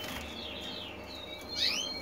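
Canaries chirping: a few faint, short calls, then two louder rising chirps near the end.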